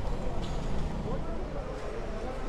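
City street ambience: a steady low traffic rumble with faint voices in the background.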